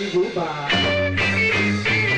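Live rock-and-roll band: the low end drops out briefly while an electric guitar plays a lick with bending notes, then bass and drums come back in with the full band under a second in.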